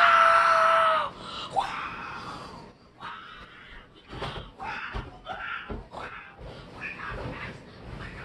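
A boy's loud excited scream, held on one pitch for about a second, then a short rising squeal. After that come scattered low thumps and rustling as the handheld phone is jostled.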